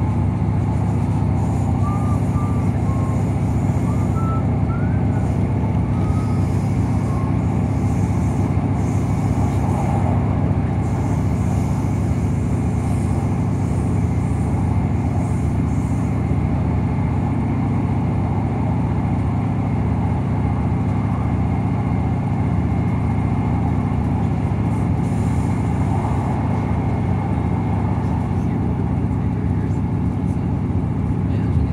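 Interior running noise of a ScotRail Class 158 diesel multiple unit at speed: a steady, loud drone of the underfloor diesel engine mixed with the rumble of wheels on rail. A few faint, short high-pitched squeals come in the first several seconds.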